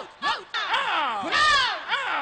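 A woman screaming in quick repeated cries, each rising and falling in pitch, with a louder, higher cry about midway.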